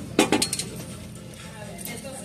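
A few light clinks and knocks in the first half second, and fainter ones near the end, over a low store background: an item being handled against a glass display shelf.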